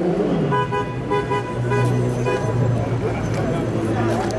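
A vehicle horn sounding in a string of short toots for about two seconds, starting about half a second in, over a steady low hum and street noise.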